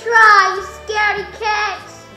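A young girl's high-pitched sing-song voice: three short phrases, each sliding down in pitch, with no clear words.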